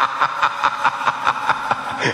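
A man's drawn-out, theatrical evil laugh, a quick run of repeated 'ha' pulses about four or five a second, over the song's backing.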